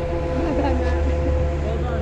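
Steady low rumble of wind and motion noise on a helmet-mounted camera while skiing slowly on packed snow, with a constant hum running under it. A faint voice comes about half a second in.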